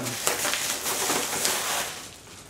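Crinkling, rustling packaging as a mailed parcel is opened by hand, a dense crackle that fades near the end.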